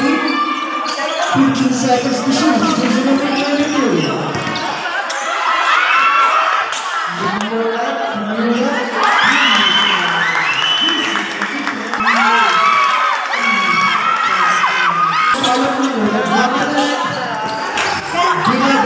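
Basketball being dribbled and bounced on a hard court during play, with several young voices shouting and calling out over it, loudest in the middle stretch.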